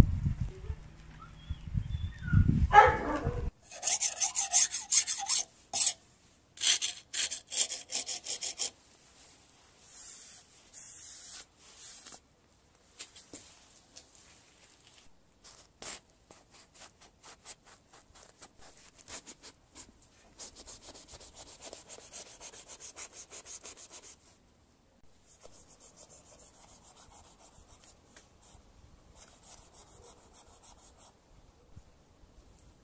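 A knife scraping and slicing through the hide of a cow's head in short, uneven rasping strokes, loudest a few seconds in and quieter later, with a brief rumble of handling at the start.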